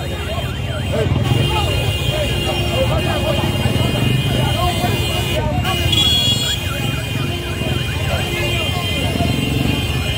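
Street crowd of many voices shouting and talking at once, with motorcycle engines running underneath. A short high steady tone sounds about six seconds in.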